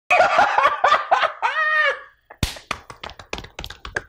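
Channel intro sting: a short vocal phrase ending in a held, drawn-out note, then after a brief gap a sudden thud followed by a run of quick, irregular clicks and taps.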